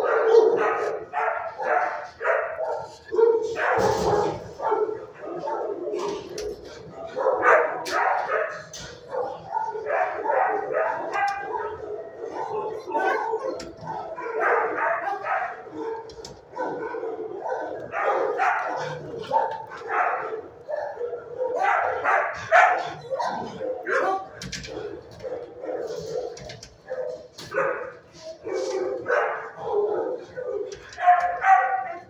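Shelter dogs barking over and over, in quick runs of several barks with short pauses between them.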